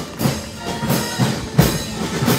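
School marching band's drum section, snare drums and bass drums, beating a steady marching rhythm of about three strokes a second, with one heavier hit near the end.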